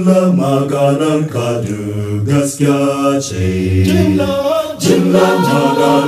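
Choir of men and women singing a Hausa gospel song a cappella, several voice parts in close harmony on held notes, with brief breaks between phrases about two and a half and five seconds in.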